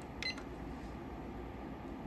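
A single short electronic beep from a GW Instek PSW bench DC power supply's front panel as its Output key is pressed to switch the output on. It comes about a quarter second in, over a steady low hum from the bench instruments.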